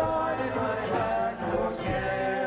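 Praise band performing a hymn live: several voices singing the verse together over acoustic guitar and drums.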